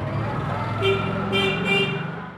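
A vehicle horn toots three short times, starting about a second in, over a woman talking.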